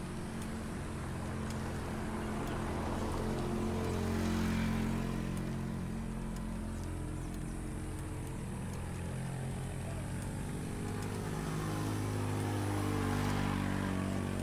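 A motor vehicle's engine running steadily at low revs, its level swelling about four seconds in and again near the end.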